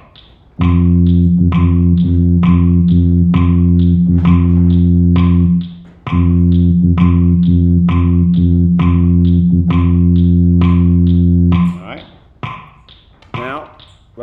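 Baritone horn sounding a single low concert F, held as two long notes of about five seconds each with a short break near the middle, over steady metronome clicks.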